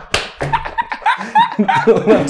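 One sharp hand clap just after the start, followed by a man's hearty laughter in short bursts.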